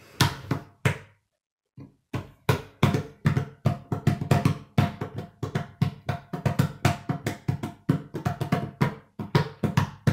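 Hands drumming on a wooden tabletop: a few knocks, a short pause, then a fast, uneven run of taps, roughly four a second, each with a short hollow ring from the table.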